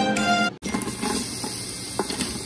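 Background music for the first half second, cut off suddenly, then an even sizzle as diced onions are tipped into hot oil in an Instant Pot's stainless steel inner pot.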